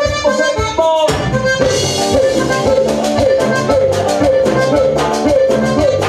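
Live band music: an accordion melody over a steady drum beat and bass, with a brief break about a second in before the band comes back in.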